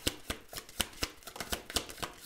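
A deck of Lenormand cards shuffled by hand: a rapid, uneven run of card snaps and clicks, several a second.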